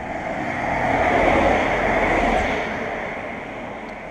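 A car driving past close by, its tyre and engine noise rising to a peak about a second and a half in and then fading away.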